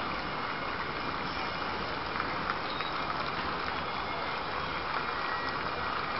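Steady outdoor street noise: a crowd's low murmur mixed with a vehicle engine running.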